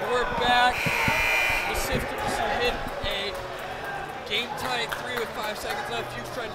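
Basketball gym sound: sneakers squeaking on the hardwood court, a ball bouncing and the crowd chattering, with a brief high tone about a second in.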